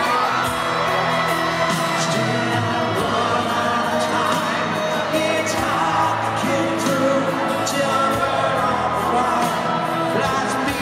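Live rock ballad played by a band at an arena concert, with singing over the music and crowd noise close to the microphone.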